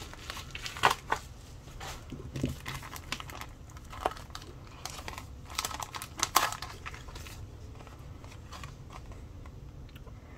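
Clear plastic packaging sleeve crinkling and crackling as a nail-sticker sheet is slid out of it, in irregular rustles that thin out after about seven seconds.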